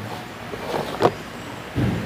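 Low rumble of wind buffeting the microphone, strongest near the end, with one sharp click about halfway through.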